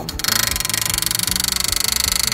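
Pneumatic rivet gun hammering a solid rivet into two aluminum sheets against a steel bucking bar, driving it home. It makes a fast, even rattle of blows that starts a moment in and lasts about two seconds.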